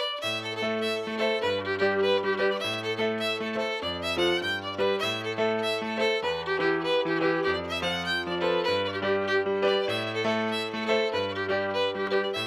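Fiddle playing a fast traditional tune with bowed notes, over a piano accompaniment holding steady chords underneath.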